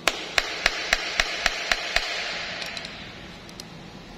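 A screwdriver tapping against a car aircon blower motor as it is worked loose: about eight sharp taps, roughly four a second, over the first two seconds, then a few faint ticks.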